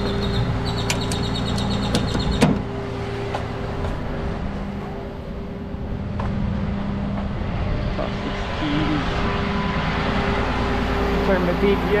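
Rapid clicking of a ratchet strap being cranked tight over the first two seconds, then a sharp clunk about two and a half seconds in. Under it, the rollback tow truck's diesel engine idles steadily.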